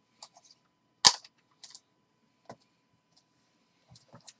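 Trading cards in hard plastic holders being handled and set down on a table: one sharp plastic clack about a second in, with a few lighter clicks around it.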